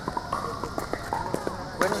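Light, irregular clicks and knocks from a plastic pickleball tube being handled.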